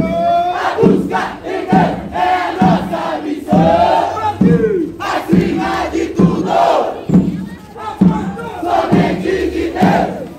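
Marching band bass drums beating a steady pulse, about one beat every 0.8 seconds, under many voices shouting and chanting together.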